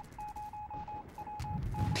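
Morse-code-like beeping: one high tone keyed on and off in irregular short and longer beeps. There is a thump about one and a half seconds in, followed by a low rumble.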